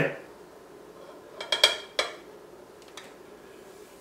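Kitchen dishes clinking: a short cluster of light clinks with a brief ring about a second and a half in, one more about two seconds in, and a faint tap near the end.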